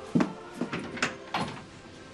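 Footsteps on a hard floor: four sharp steps about a third of a second apart.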